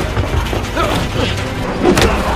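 Action-film soundtrack: music under a busy mix of clatter and struggle noises, with a sharp hit just before the end.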